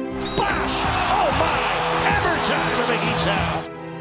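Live basketball game audio cut in over background music: arena crowd noise with squeaks and several sharp hits, stopping abruptly near the end.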